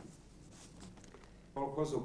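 Faint rustling of a newspaper being handled. A voice starts speaking about one and a half seconds in.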